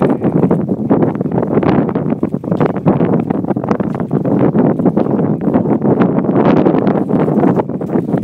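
Strong wind buffeting the microphone: a loud, continuous rumble that surges and dips without a break.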